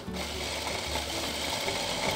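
Hand-held stick blender with a chopper bowl attachment running steadily, its motor chopping food in the bowl.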